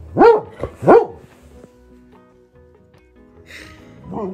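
A dog gives two short barks, about half a second apart, each sweeping sharply upward in pitch, in the first second.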